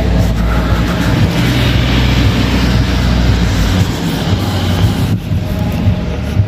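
A passing motor vehicle on a wet street: a steady low engine rumble with tyre hiss, the rumble fading about four seconds in.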